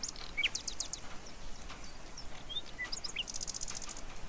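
Small birds chirping over a steady outdoor background hiss. A quick run of downward-sweeping high chirps comes about half a second in, scattered single chirps follow, and a fast trill of rapid repeated notes comes near the end.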